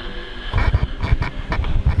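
Handling noise on a hand-held camera's microphone: irregular low thumps and rumble as the camera is moved and gripped, picking up from about half a second in.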